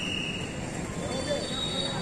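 Quiet street ambience: a steady background hiss with thin, high-pitched whining tones that hold for a second or so and then shift to another pitch.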